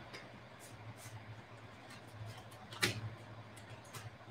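A faint, slow, deep inhalation over a steady low hum, with one short click about three seconds in.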